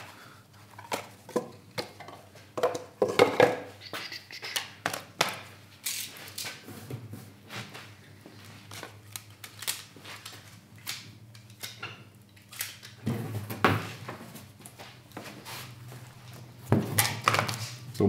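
Cardboard and small objects being handled and set down on a perforated steel welding table: scattered taps, clicks and rustles. Near the end a large cardboard sheet being laid out rustles more loudly.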